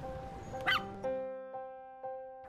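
A small dog gives one short yip about two-thirds of a second in, over background music of held notes.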